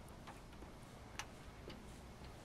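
Footsteps of a person walking: three light clicks at an uneven pace, the sharpest about a second in, over a faint outdoor background.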